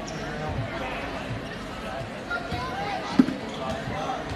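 Spectators chatting in a gymnasium, with a single sharp thud of a volleyball striking the hardwood floor a little over three seconds in.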